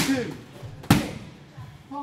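Two hard strikes from a boxing glove and kick landing on hand-held leather strike pads, about a second apart, each a sharp smack with a short echo off the hall. A short grunted breath-out comes with the first strike.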